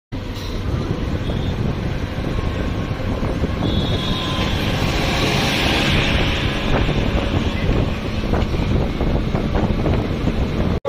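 Wind rushing and buffeting the microphone at an open window of a moving bus, over the steady rumble of road and engine noise; the rush swells about halfway through.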